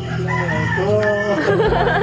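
A rooster crowing: one long drawn-out call, over a steady low hum.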